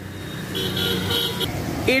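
Road traffic going by, with a vehicle horn sounding for about a second near the middle.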